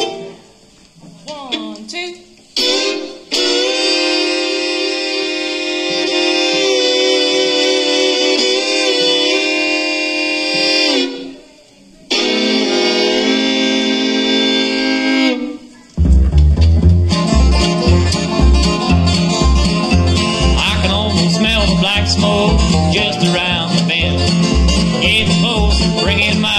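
Bluegrass band music. Two fiddles play long held notes in harmony, with a short break about eleven seconds in. About sixteen seconds in, the upright bass, banjo and guitar join with a steady driving beat.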